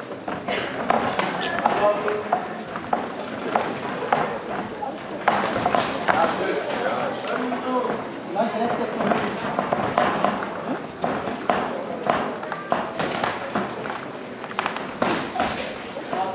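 Boxing bout at ringside: voices and shouts from the crowd and corners, with many sharp slaps and thuds of gloves landing and boxers' shoes on the ring canvas.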